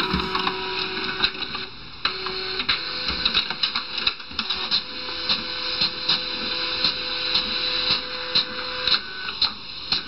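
Desktop fax machine printing: a steady mechanical whir of the feed and print mechanism with regular clicks, about three a second, getting louder about two seconds in.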